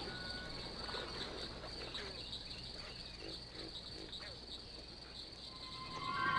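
Faint, steady high-pitched insect chirring.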